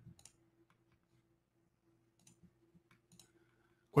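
A few faint, scattered clicks at a computer: one near the start and a small cluster in the second half. A faint steady hum lies under them.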